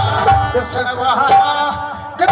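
Live Sindhi folk music: a wavering, ornamented melody over hand drums. The drum beats fall away about halfway through, leaving the melody largely alone.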